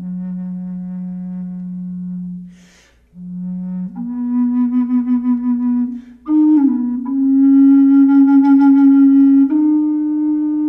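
Wooden bass side-blow flute in F# playing a slow melody. It opens on a long low note, then there is a quick audible breath about three seconds in. The line steps up to higher held notes with a pulsing vibrato, with a short break just after the middle.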